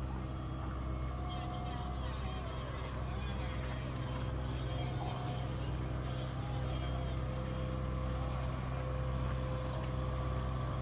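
Diesel engine of a trailer-mounted hydraulic spool running steadily, with a faint steady whine over its low hum, as the spool winds on flexible drop pipe.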